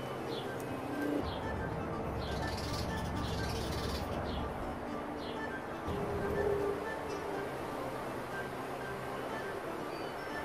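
Background music playing steadily, with a few short bird chirps over it in the first half.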